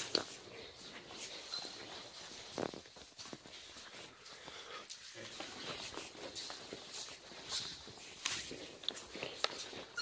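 Faint, irregular footsteps on a hard tiled floor, with scattered light clicks and rustles.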